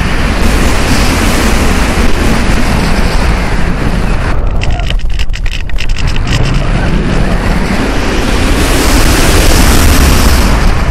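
Airflow rushing over the onboard camera's microphone on a gliding RC sailplane, a loud wind roar with no motor. It eases briefly about halfway through as the plane manoeuvres, then builds again and is loudest near the end.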